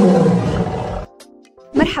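A loud, deep monster-like roar sound effect set over music, its pitch sliding down for about a second before it cuts off. A faint, short musical tone follows.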